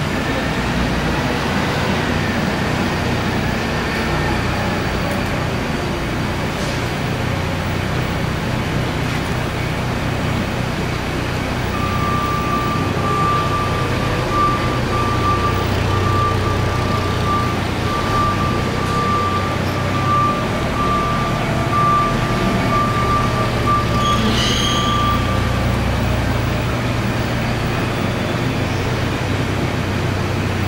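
Hyster 5,000 lb LP-propane forklift's engine running steadily as the truck is driven. In the middle of the run a reverse alarm beeps rapidly at one pitch for about fourteen seconds.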